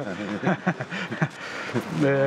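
A man laughing in a run of short chuckles, about five or six quick bursts in the first half, trailing off.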